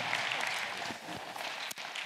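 Congregation applauding, the clapping thinning out and dying away.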